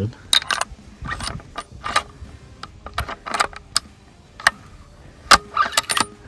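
Bolt of a Howa Super Lite bolt-action rifle being worked by hand: a string of sharp metal clicks and clacks as the bolt is opened, drawn back and closed, with a brass case ejected near the end. The spent cases have been sticking on extraction, which the owner puts down to too little extractor spring or a bad extractor angle.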